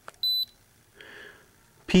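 Handheld OBD-II scan tool (Craftsman 87702 code reader) giving one short, high beep as its button is pressed to scroll to the next stored trouble code, with a faint click just before it.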